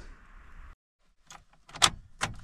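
Car keys jangling and clicking at the ignition: a few short sharp clicks after a moment of dead silence, the loudest near the end.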